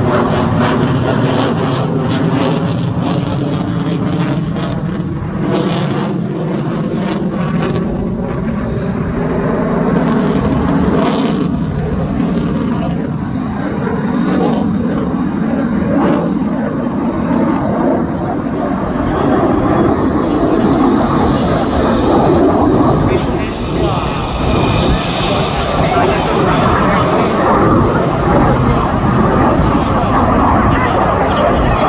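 Jet noise from an F-22 Raptor's twin afterburning turbofans as it flies overhead. The sound is loud and continuous, with faint tones gliding slowly downward in pitch over the first ten seconds. After that it becomes a dense, full rumble that swells through the second half.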